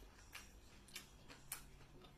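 Faint, irregular clicks and smacks of a person chewing food, about half a dozen in two seconds.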